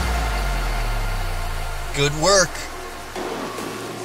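The electronic workout track drops out into a long, low bass note that slowly fades. A short, pitched vocal sound comes about two seconds in.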